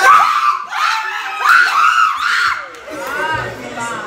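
A small group of football fans screaming and shouting together as an attack reaches the penalty area, a loud outburst at the start and a second about a second and a half in, dying down near the end: their reaction to a scoring chance that goes begging.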